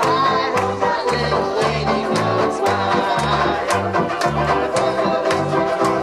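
Banjo ukuleles strummed in a brisk, even rhythm, with a low bass part stepping about twice a second and voices singing along.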